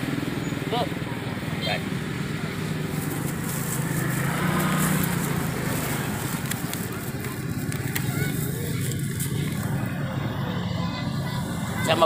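A motorcycle engine running steadily close by, a low even hum that rises a little in pitch and loudness about four to five seconds in, then settles.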